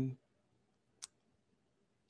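The tail of a man's word, then a pause with a single short click about a second in.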